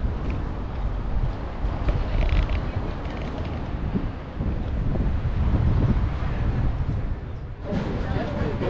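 Wind buffeting an outdoor microphone, a low uneven rumble that rises and falls in gusts.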